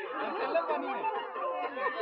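Chatter: several people's voices talking over one another.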